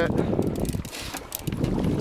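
Wind rumbling unevenly on the microphone on an open boat at sea, dipping briefly about a second in, with faint clicks.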